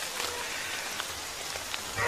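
Steady rain falling on rainforest foliage, with a few single drops ticking close by.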